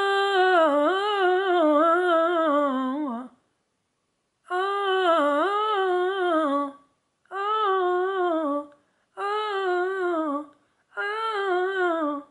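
A man singing wordless vocal runs unaccompanied, in five phrases: one long one, then four shorter repeats. Each is a quick wavering line of notes that drops away at the end, a hard run being practised over and over.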